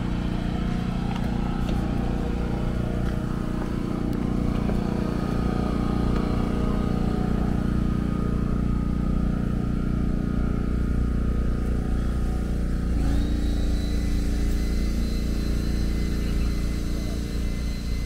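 A motor vehicle's engine running steadily close by, a constant hum whose tone shifts about thirteen seconds in.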